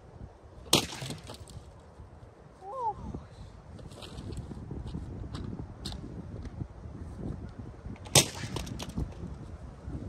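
Plastic Kenmore vacuum powerhead smashed down hard twice, about seven seconds apart, with smaller clacks and rattles of the loosened housing between the two smacks. Wind rumbles on the microphone throughout.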